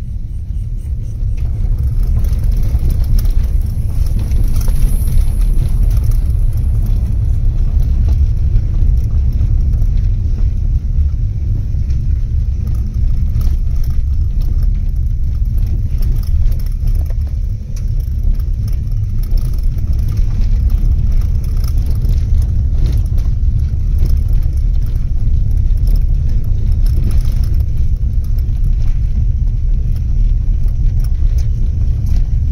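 Steady low rumble of a car driving over a rough dirt track, heard from inside the cabin, with faint knocks and rattles from the bumps.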